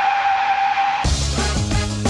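Car tyres squealing, a steady squeal over a hiss, cut off about a second in by band music with a bass line and a beat.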